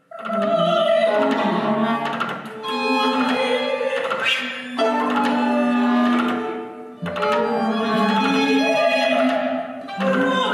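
Classical ensemble music led by bowed strings playing long, sustained notes. It comes in suddenly and moves in phrases that change every two to three seconds.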